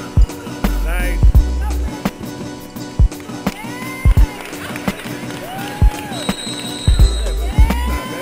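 Basketball bouncing on a hardwood gym floor in irregular loud thumps as it is dribbled up the court, with sneakers squeaking on the boards as the players run.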